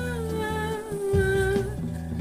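A woman humming one long note that falls slightly, over a rap song's backing track with a bass line and beat.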